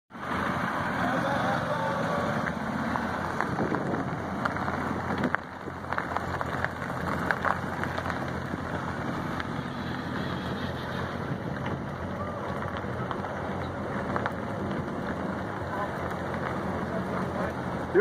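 Corvette V8 engines running at low speed as a line of cars rolls slowly past, with background voices and some wind on the microphone.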